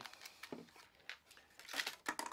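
Faint crinkling and a few light clicks of a clear plastic package being handled and set aside.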